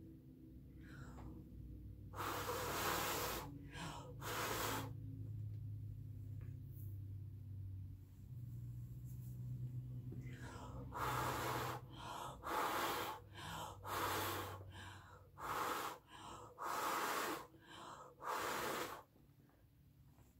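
A person blowing hard by mouth across wet acrylic paint on a canvas, pushing the paint out into blooms: two long blows a couple of seconds in, then a run of about seven shorter blows in the second half, with quick breaths drawn in between.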